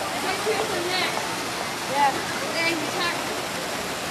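Steady rush and splash of an outdoor fountain's water jets falling into its pool, with faint voices of people talking.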